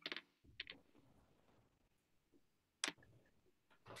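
Near silence: room tone broken by a few faint clicks, one at the start, two close together just past half a second, and one about three seconds in.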